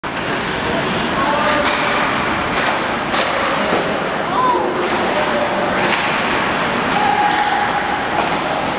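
Ice hockey game in a rink: a steady hiss of play on the ice, with several sharp clacks of sticks and puck, and distant voices calling out.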